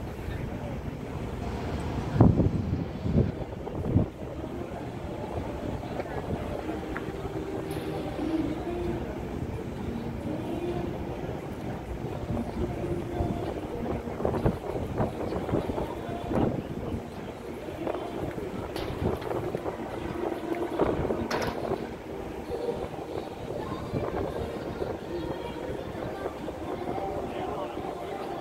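Outdoor ambience of wind buffeting a phone microphone, with indistinct voices in the background. A few loud bumps come about two to four seconds in.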